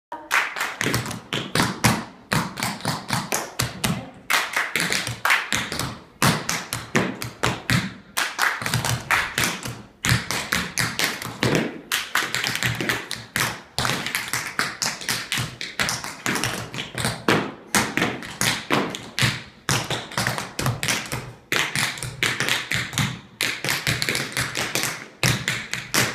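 Several dancers' shoes tapping quick rhythms on a wooden floor, in phrases of rapid clicks broken by brief pauses about every two seconds.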